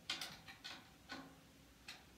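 Light, irregular stick taps on a snare drum, about six in two seconds, some with a short ring of the head after them.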